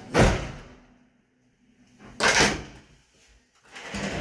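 Doors being worked shut: two short knocks about two seconds apart, each a door meeting its frame and latching.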